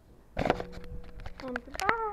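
Handling noise on the camera: a sudden knock about a third of a second in, then a run of sharp clicks and taps, with a steady pitched hum under them and a short wavering pitched call near the end.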